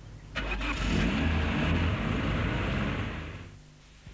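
Holden Astra car engine accelerating hard: a sudden start about a third of a second in, the engine note rising as it pulls away, then fading out over the last second.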